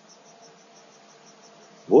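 Quiet pause in video-call audio: low background hiss with a faint steady hum and a faint high-pitched pulsing, about seven pulses a second.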